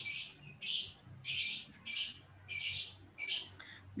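A bird squawking: about seven short, harsh high-pitched calls at uneven intervals.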